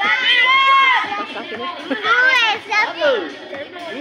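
Several children's high-pitched voices calling out and shouting over one another, with no clear words.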